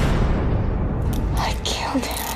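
Film-trailer sound design: a dense low rumble with a sharp hit at the start, and a woman's short gasping cry near the end.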